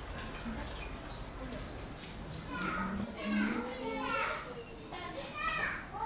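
Children's voices talking and calling in the background, starting about two and a half seconds in.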